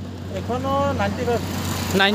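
Quiet talking by a man over a steady low hum of a motor vehicle engine running.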